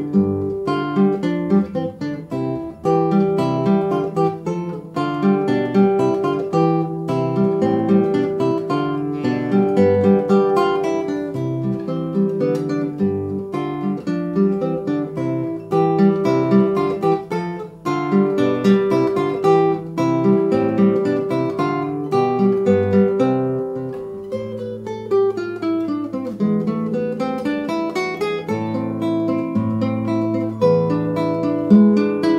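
Solo acoustic guitar playing a lively étude: plucked notes in intervals over a bass line. About five seconds before the end, the notes glide down and back up.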